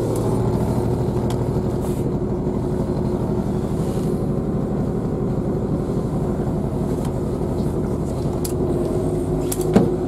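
Steady rumble and hum of a passenger train, heard inside the carriage by the doors. There is a sharp knock near the end.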